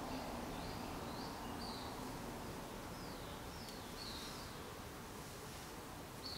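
Faint steady background hiss with several short, high bird chirps scattered through it.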